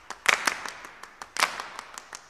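A run of sharp percussive hits at an uneven pace, each with a short ringing tail. The two loudest come about a third of a second in and about a second and a half in.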